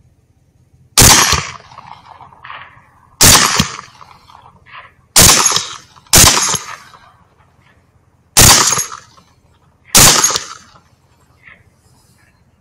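Six rifle shots fired in quick succession, one to two seconds apart, each a sharp crack followed by a brief echoing tail.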